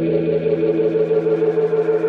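An electric guitar chord held and ringing out through a single-rotor Leslie-style rotating speaker cabinet, its volume pulsing fast and evenly as the rotor spins.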